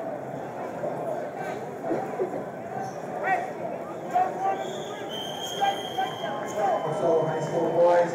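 Crowd murmur and scattered voices echoing in a large hall. About four and a half seconds in, a steady high whistle blast lasts about a second and a half: a referee's whistle.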